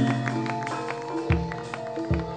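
Javanese gamelan ensemble playing: bronze metallophones and gongs struck in a steady run of ringing notes. A deep drum stroke comes about two-thirds of the way through.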